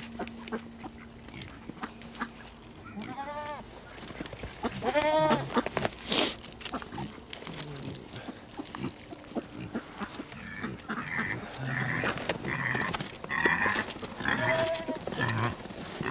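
Goats bleating several times in short, quavering calls, more of them close together in the second half.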